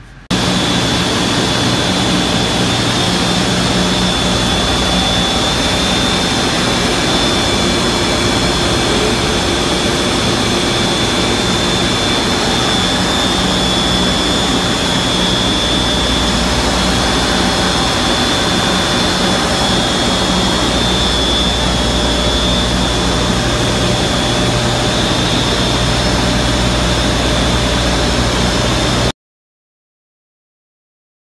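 Loud, steady machinery noise with a constant high whine and a low hum, starting abruptly and cutting off suddenly about a second before the end.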